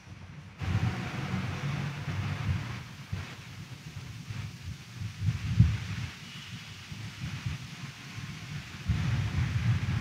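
Congregation getting to its feet: a low, uneven rumble of shuffling and movement that starts about half a second in.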